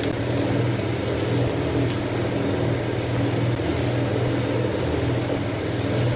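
A steady low mechanical hum runs throughout, with brief crinkles of plastic seasoning packets being torn open and squeezed over the pan in the first two seconds.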